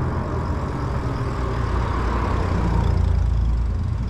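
Steady low rumble of wind on the microphone and tyre noise from an e-bike riding along a paved street, swelling slightly in the second half.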